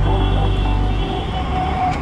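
Background music with held low bass notes that change about a second in, under a sustained higher tone.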